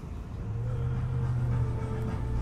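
A motor vehicle's engine running with a steady low hum that comes in about half a second in and grows louder.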